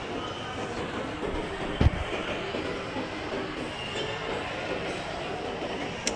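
Escalator running with a steady mechanical noise under the general background sound of a busy shopping mall. A single sharp, low thump comes about two seconds in.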